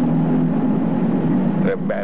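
A steady low hum of two held tones runs under a pause in the speech, over a faint background hiss; a spoken word starts near the end.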